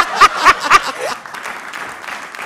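Hearty laughter in a few quick bursts, about four a second, over studio audience applause. The applause carries on alone after the laughter stops, about a second in.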